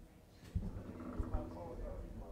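Indistinct low chatter among several people, with a few low thumps and bumps of people and gear moving around a stage.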